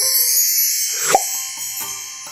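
Magic sparkle sound effect: a high, glittering shimmer that sweeps upward, with a single pop with a dropping pitch about a second in, as for something magically appearing.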